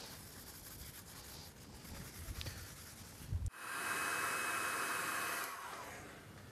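Paper tissue rubbing wax into a scorched wooden guitar body, a soft, low scuffing. About three and a half seconds in, the sound cuts to a louder, steady hiss of a heat gun blowing for about two seconds, warming the tissue so the wax spreads and buffs more easily.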